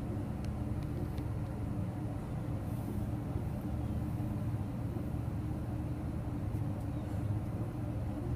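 A steady low rumble with a faint hum in it, unchanging throughout, with a few faint ticks in the first second or so.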